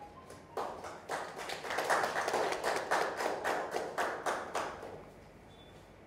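Audience applauding: the clapping starts about half a second in, swells, and dies away after about five seconds.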